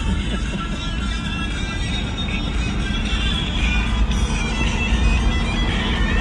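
Music playing from the SUV's stereo inside the cabin, over the steady low rumble of the vehicle driving on the road.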